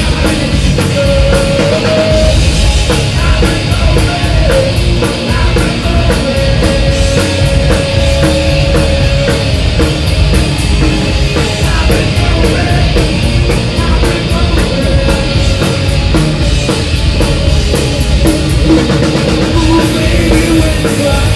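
Heavy metal band playing live at full volume: distorted electric guitar over drums with a fast, steady cymbal beat.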